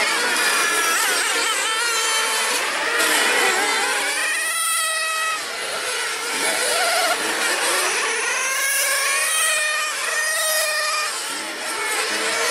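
Several 1/8-scale nitro RC racing cars' small glow engines running at high revs together. Their high-pitched whines overlap and rise and fall in pitch as the cars accelerate and slow for corners.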